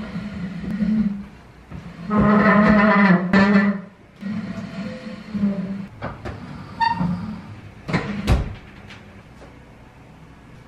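A heavy wooden dresser being dragged across a parquet floor in short pushes. Its feet give a low scraping groan, loudest about two to four seconds in, followed by a few knocks and a heavy thump.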